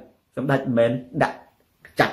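A man speaking in short phrases, with brief pauses between them.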